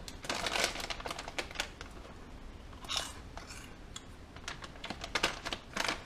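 A plastic snack bag of Jack n' Jill Chiz Curls crinkling as it is handled and opened: a run of sharp crackles, with a louder rustle about three seconds in and another just before the end.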